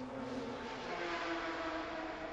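Porsche 911 GT3 Cup race cars' engines running at speed, a steady mechanical hum under a hiss, with the engine note rising slightly.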